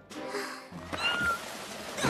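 Cartoon avalanche sound effect: a sudden rush of tumbling rock and dust noise. About a second in come short, high-pitched cries from the ponies caught in it. Background music plays underneath.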